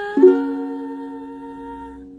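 A singer holds one long, steady sung note, the end of the chorus line, over a ukulele chord struck about a quarter second in and left ringing.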